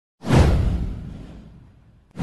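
A whoosh sound effect for an animated intro, starting suddenly a moment in with a deep low boom under it, then fading away over about a second and a half.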